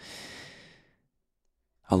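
A man sighs out a long breath that fades away over about a second, then a pause before he speaks again.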